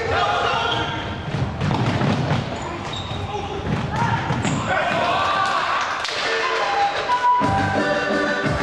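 Futsal ball kicked and thudding on a wooden sports-hall floor, with players' shouts in the hall; a sharp kick about four seconds in. Music comes in near the end.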